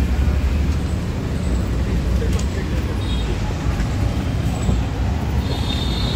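Road traffic noise: a steady low rumble of passing vehicles.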